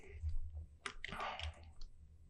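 A few faint, separate clicks of computer input while a brush is being set up, over a low steady hum.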